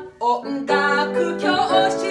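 Grand piano being played: short, accented chords, then held chords from about a third of the way in.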